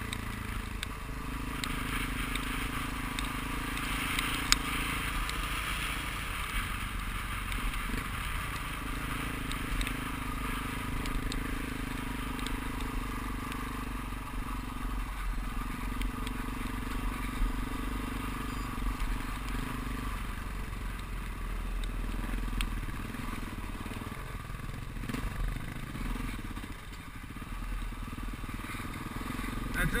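Off-road motorcycle engine running as it rides a gravel track. Its note holds steady for several seconds at a time and shifts between stretches with throttle and gear changes, over a steady rumble of wind and road noise.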